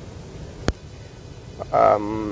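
A short voiced hum ('mm') from a person near the end, the loudest sound here, after a pause of low rumble broken by a single sharp click about two-thirds of a second in.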